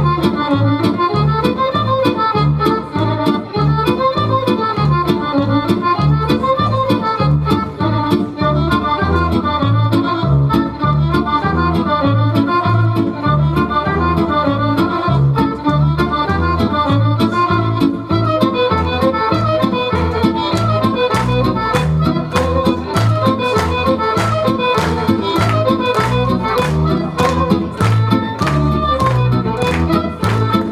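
Accordion-led Serbian folk dance music with a steady, even bass beat under a quick running melody. Sharp ticks on the beat become more prominent in the second half.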